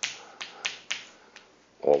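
Chalk striking and scratching on a blackboard as symbols are written: four sharp taps in the first second, the first the loudest.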